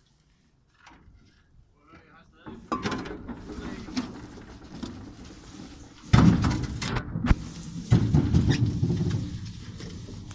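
Knocks, clicks and scraping on an aluminium workboat as a rope is handled over the side, starting after a quiet first couple of seconds, with heavy thumps about six and eight seconds in.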